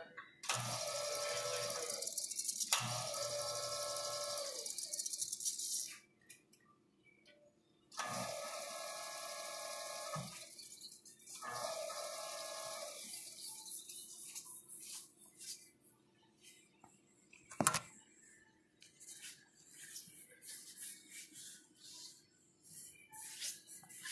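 Teledyne Readco UPC-25 welding positioner's electric drive motor and gearing running in two stretches of about five seconds each, a steady whine over hiss, as the table is powered. A single sharp knock comes later.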